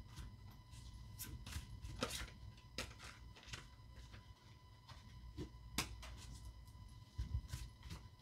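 Tarot cards being handled and laid down on a tabletop: faint, irregular soft taps and slaps of card on card, the sharpest about two seconds in and again about six seconds in, over a thin steady hum.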